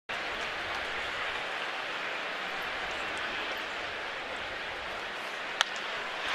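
Steady murmur of a ballpark crowd, then near the end a single sharp crack of a wooden bat hitting a pitched baseball for a line-drive single.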